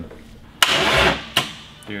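Starter motor of a 24-valve VW VR6 engine cranking it briefly through a remote starter switch: a click, under a second of cranking, then a click as it stops, without the engine catching. The crew blames the starter.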